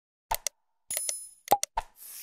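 Sound effects of a like-and-subscribe animation: a pair of mouse clicks, a short bell ring about a second in, then more clicks and a pop.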